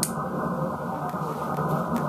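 AM broadcast-band receiver audio from a software-defined radio, tuned next to a strong 50 kW local station: a steady, band-limited rushing hash of adjacent-channel splatter. The antennas are phased against the local, so the splatter is reduced. A click comes at the very start.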